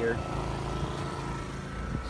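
A machine running steadily nearby: a continuous low mechanical hum with a faint, high, steady tone above it.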